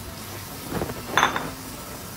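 A brief clink of a white ceramic plate being handled, about a second in, against low background noise.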